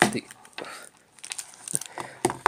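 Crackling of plastic wrapping on trading-card decks as hands handle and open them, in short irregular bursts with a brief lull about a second in.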